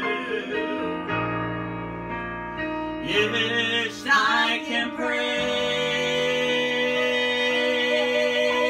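A man and a woman singing a gospel song together over piano accompaniment, with long held notes.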